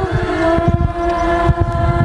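A choir of voices holding a long sustained chord, with irregular low thumps underneath.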